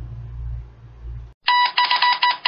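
Low steady hum, then a sudden cut to a loud electronic news-intro sound effect about one and a half seconds in: a rapid run of ringing, bell-like beeps at a fixed pitch.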